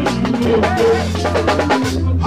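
Live band playing a fast worship tune: a drum kit beating a quick, steady rhythm over a bass line, with electric guitar.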